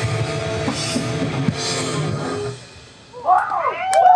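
Live rock band, with electric guitar, bass and a drum kit with cymbals, playing until the song stops about two and a half seconds in. After a short lull, a man's voice comes in over the PA near the end.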